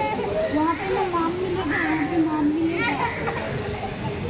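Voices of children and adults around the ceremony, with one child's voice drawn out in a long wavering cry through the middle.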